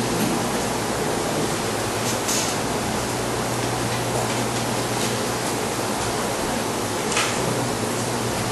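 Steady hiss of room and recording noise with a constant low hum beneath it, broken by two short faint noises about two seconds in and about seven seconds in.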